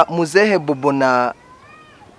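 A man's voice through a handheld microphone: a drawn-out, sing-song utterance that rises and falls in pitch, lasting about the first second and a half, then stops.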